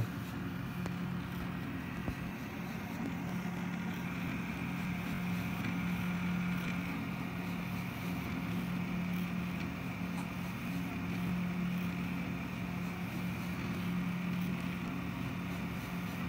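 Delta 3D printer printing its first layer: a steady hum from the hotend cooling fan, with the stepper motors' whir rising and falling as the effector moves about the bed. The motors are driven by an Arduino Due on a hacked RAMPS 1.4 board.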